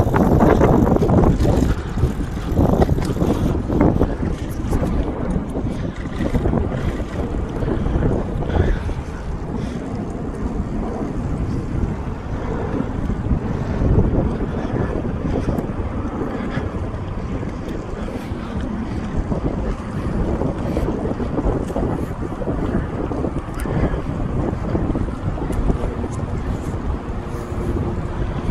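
Wind buffeting the microphone of a camera carried on a moving bicycle: a steady low rumble, loudest over the first few seconds.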